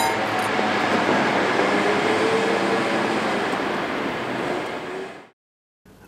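Steady rushing noise, even and without tones, fading out about five seconds in.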